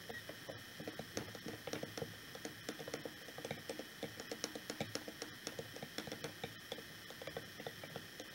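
A spoon stirring glitter, water and glue in a small glass jar, clicking and scraping against the glass in quick, irregular ticks, several a second.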